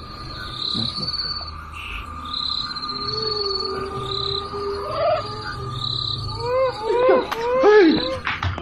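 Insects chirping steadily in the night in short repeated bursts, with a thin steady tone underneath. Near the end come several short cries that rise and fall in pitch.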